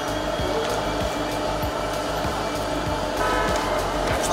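A steady rushing noise, like a fan or blower, with music faintly beneath it.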